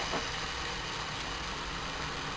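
Masala in a pressure cooker sizzling as a steady low hiss, muffled under a heap of freshly added raw mutton pieces.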